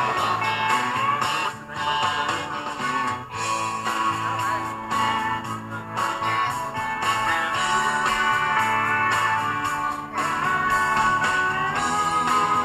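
Instrumental break of a country song: electric guitar playing a lead line with bending notes over the band's steady rhythm section.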